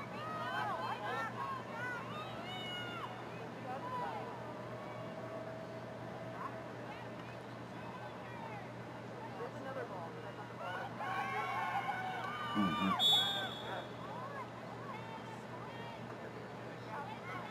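Distant, unintelligible voices of players and spectators calling out across a lacrosse field, over a steady low hum. A short high tone sounds about 13 seconds in.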